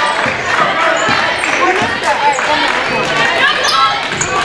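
Basketball dribbled on a hardwood gym floor during play, with short sneaker squeaks and voices of players and spectators in the hall.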